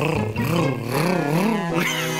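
Cartoon snowmobile engine sound effect: a steady low hum with a revving pitch that rises and falls about twice a second, stopping shortly before the end.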